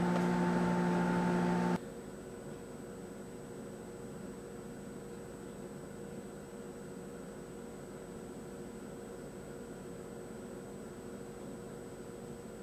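A steady droning tone cuts off suddenly just under two seconds in, leaving a low, steady hiss of room tone with a faint electronic hum for the rest of the time.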